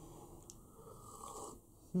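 Faint sipping of tea from a mug, with a small click about half a second in.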